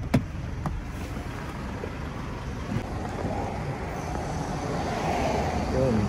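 A pickup's inside door handle is pulled and the latch clicks open at the start. Then comes a steady, low, noisy background with some rustling, growing a little louder toward the end.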